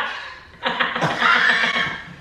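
People laughing loudly: a short burst at the start, then a longer high, wavering laugh from about half a second in.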